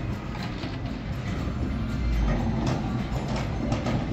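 Casino floor ambience: background music over a steady wash of room noise, with a brief low rumble about two seconds in.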